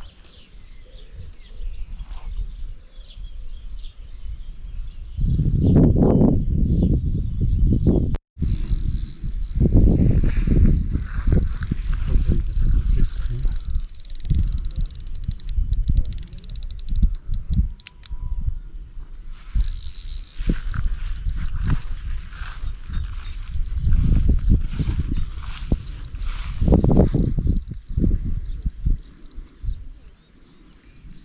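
Carp rod and big-pit reel being handled: irregular clicking from the reel under heavy rumble and rustle against a body-worn camera's microphone. The rumble starts about five seconds in and breaks off sharply just after eight seconds.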